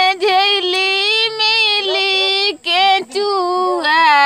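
A high voice sings in long held notes with a slight waver, breaking off briefly about two and a half seconds in and again just after three seconds before carrying on.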